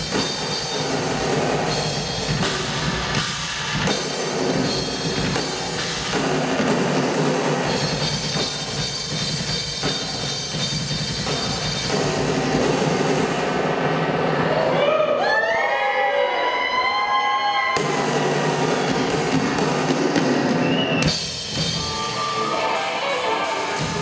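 Live rock drum kit playing with cymbals, heavy and continuous, in what looks like a drum solo. About two-thirds through, the drums drop away for a few seconds under sliding, wavering high tones, then the full sound comes back.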